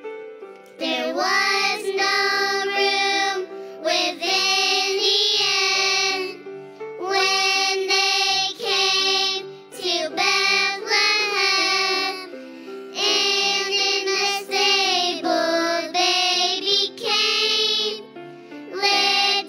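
A preschool children's choir singing a song in unison over an instrumental accompaniment, in phrases of a few seconds with short breaths between them.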